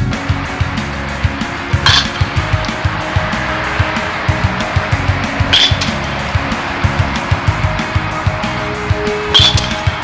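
Rock music with a steady beat. Three sharp metallic pings sound through it, about four seconds apart: a metal baseball bat striking pitched balls in batting practice.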